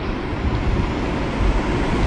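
Steady hiss with a low rumble and no speech: the background noise of an old lecture-hall recording during a pause.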